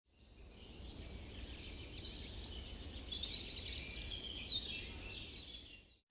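Faint birdsong, with several birds chirping in short overlapping calls over a low background rumble. It fades in at the start and fades out near the end.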